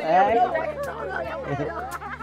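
Several people chattering over one another, with a steady low hum underneath.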